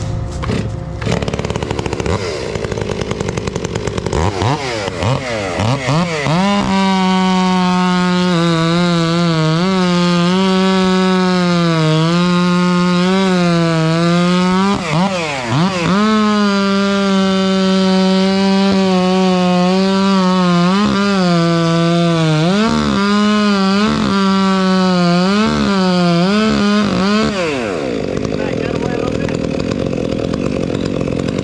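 Two-stroke gas chainsaw revving up a few seconds in, then held at full throttle cutting through a small tree trunk near the ground, its pitch sagging under load and dipping briefly several times before it drops back near the end.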